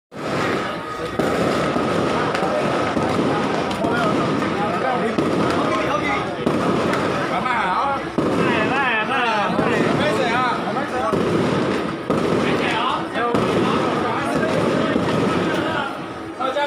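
A string of firecrackers crackling loudly and without a break, with crowd voices over it.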